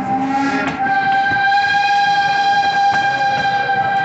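Steam locomotive whistle blowing one long, steady high note that swells about a second in, as the train pulls out. A single click of a wheel over a rail joint comes near the end.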